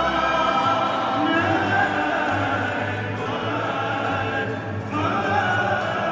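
Cape Malay male choir singing, a solo voice carrying long held notes over the choir's sustained harmony, with acoustic guitar accompaniment. A new phrase begins about five seconds in.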